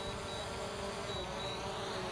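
DJI Mavic Air 2 quadcopter's propellers buzzing steadily as it descends the last foot onto its landing pad.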